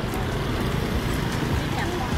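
Street noise of passing traffic, steady and heaviest in the low end, with voices in the background.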